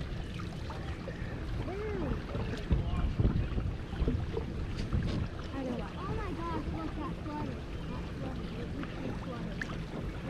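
A steady low rumble, with faint distant voices calling now and then over it.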